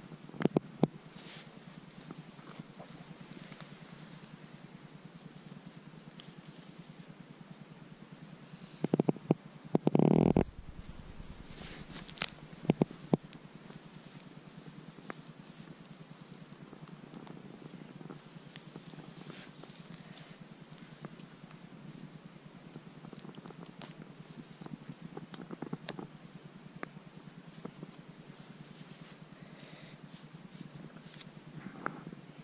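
Rustling and light crunching of moss, dry reindeer lichen and twigs on a forest floor under footsteps and a hand parting the growth to reach a bolete, with a low rough rubbing close to the microphone. Louder rubbing bursts come about ten seconds in and again a couple of seconds later.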